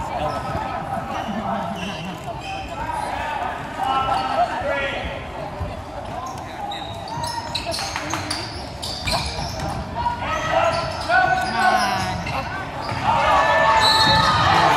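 A basketball being dribbled on a hardwood gym floor, with the indistinct voices and shouts of players and spectators echoing around the hall. The noise swells near the end.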